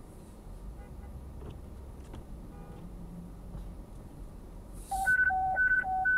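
Dispatch alert tones from a scanner radio: short beeps switching quickly between a low and a high pitch, starting about five seconds in. Before them, only the low rumble of the car.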